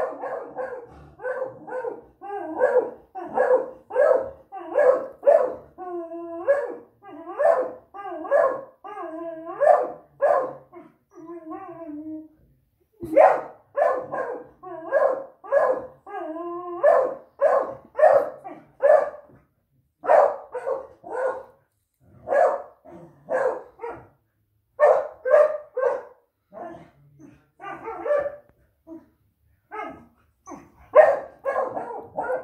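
Dog barking over and over, about two barks a second, with a stretch of longer, wavering calls in the middle and a brief pause just before halfway.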